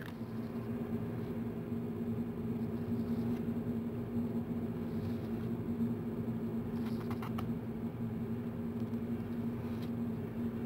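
A steady low hum with one fixed tone in it, like a small motor or fan running, and a few faint clicks about seven seconds in.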